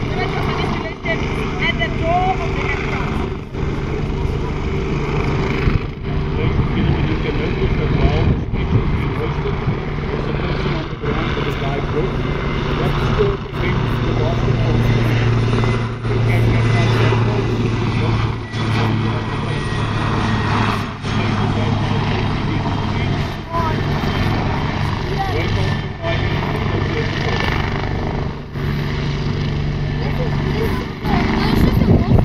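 Helicopters flying low at close range: steady turbine and rotor noise, with a low hum that swells in the middle and then eases.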